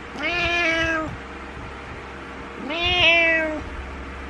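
Domestic cat giving two long meows about two seconds apart, the second slightly louder, each rising briefly and then held before trailing off. They are insistent meows of a cat trying to get its owner out of bed.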